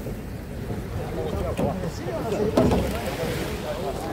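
Indistinct voices of several people talking in the background, with wind rumbling on the microphone.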